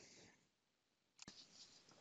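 Near silence, with a single faint computer mouse click a little over a second in.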